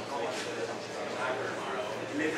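Indistinct talking, with no music playing.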